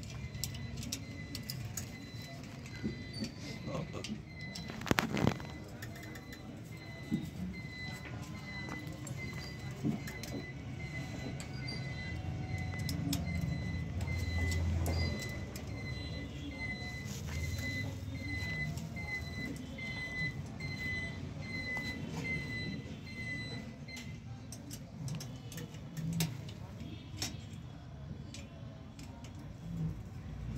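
Metal clinks and rattles of a steel wire bicycle basket and its mounting bracket being handled and fastened, with one loud clank about five seconds in. Throughout, a short high beep repeats steadily, a little faster than once a second, and stops about six seconds before the end.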